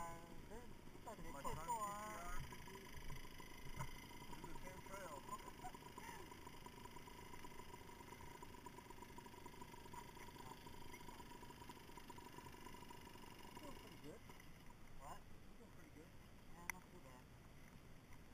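Faint, muffled voices in the first couple of seconds, then a quiet outdoor background with a faint steady hum and a few small clicks near the end.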